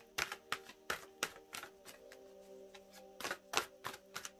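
A deck of tarot cards being shuffled by hand: a run of quick, sharp card snaps and clicks, with a pause of about a second and a half in the middle, over soft background music with steady held notes.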